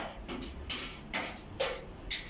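A series of soft, short ticks or taps, about two a second, over a faint low background hum.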